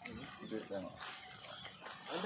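Faint, indistinct voices of people talking in the background, with a brief rustle about a second in.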